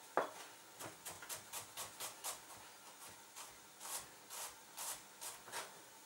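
Chef's knife cutting and chopping peeled garlic cloves on a plastic cutting board: one sharp knock near the start, then runs of light taps, about four a second, with a short pause around the middle.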